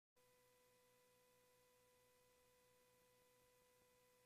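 Near silence, with only a very faint steady tone.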